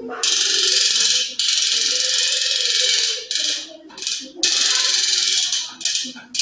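Small battery-powered DC motor spinning a fan propeller on a homemade model motorboat, running with a loud rattling whir that cuts out briefly a few times.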